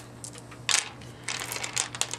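Beads of a beaded necklace clicking and clacking against each other and on a wooden tabletop as the necklace is handled and laid out: one sharper clack a little under a second in, then a run of lighter clicks.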